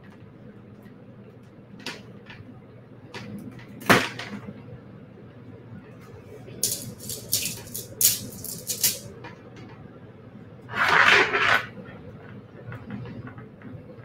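Small beads clicking and rattling in a metal bead tin as they are picked through by hand. There is a sharp click about four seconds in, a quick run of clicks in the middle, and a short rattle near the end.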